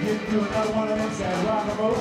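Live rock band playing an instrumental passage, with drums, electric guitar and a held, bending lead melody over the band.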